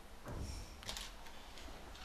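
Quiet room noise with faint handling sounds and one sharp click just under a second in.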